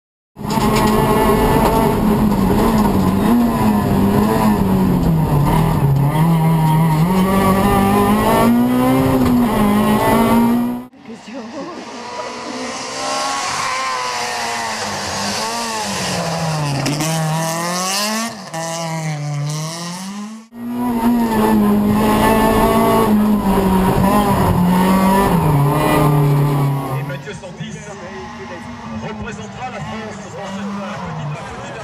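Renault Twingo R2 Evo rally car's four-cylinder engine driven hard, its pitch climbing and dropping again and again through gear changes and corners, in three clips cut abruptly one after another. A steady hiss sits over the engine in the middle clip, and the last few seconds are quieter.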